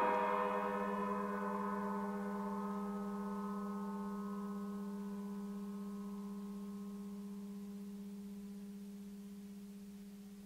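A low chord from the ensemble's two grand pianos rings on after being struck, several steady tones with the lowest, around a low hum, lasting longest, fading slowly and evenly over about ten seconds.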